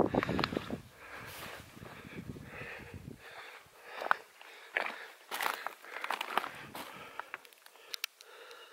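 Footsteps crunching irregularly on loose shale scree, with wind rumbling on the microphone for the first three seconds.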